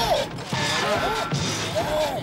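Cartoon soundtrack music with quick swooping notes that rise and fall again and again, over a loud noisy wash like a crash or rushing sound effect.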